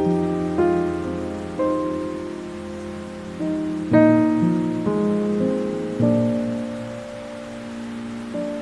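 Slow, gentle piano music, chords struck about once a second and left to ring, over a steady hiss of rain.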